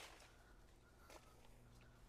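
Near silence: faint outdoor background with a low, steady hum.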